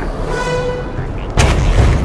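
Animated-cartoon sound effects: a brief high pitched tone, then a sudden loud boom about one and a half seconds in that trails off into a low rumble.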